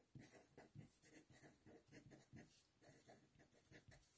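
Marker pen writing on paper: a run of faint, short scratching strokes.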